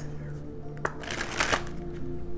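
Tarot deck handled and shuffled by hand: a single card click a little under a second in, then a quick run of card flicks lasting about half a second, over quiet background music.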